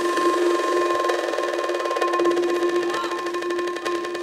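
Electronic dance music from a DJ set: a held synth tone over fast ticking percussion, with little bass.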